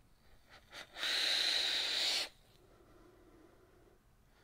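A long drag drawn through a vape atomizer on an RX200 mod, freshly wicked and built at 0.54 ohm: one loud, airy hiss lasting just over a second, starting about a second in. After it comes only faint breath.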